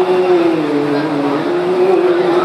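A man's unaccompanied voice reciting a naat, an Urdu devotional poem, holding one long melodic note that wavers slowly down and back up.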